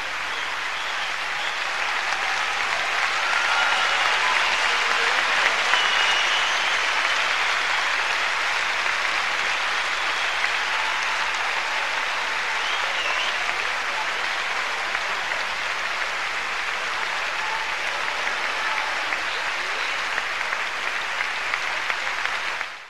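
Large concert-hall audience applauding steadily, swelling a few seconds in and then holding.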